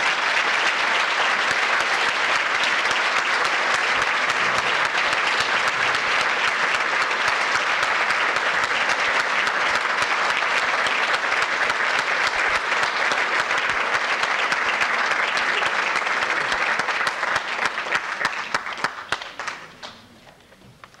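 Audience applauding, a dense steady clapping that thins to scattered claps and dies away in the last few seconds.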